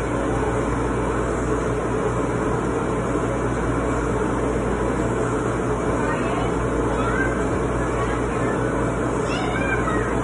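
Steady, loud background noise of an indoor playground, with a child's short, high-pitched squealing cries in the second half, the last near the end.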